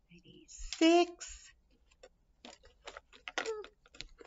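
Wooden craft sticks clicking lightly against each other as they are handled and counted out, a scatter of small clicks through the second half.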